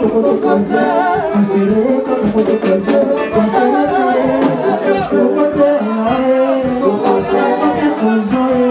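A man singing into a microphone over live band music with drums.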